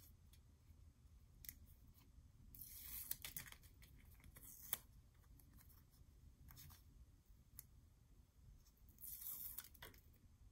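Mostly quiet, with faint handling sounds of double-sided tape and fabric ribbon being worked by hand: a few short scratchy rustles, about three seconds in, near five seconds and near the end, with small clicks between.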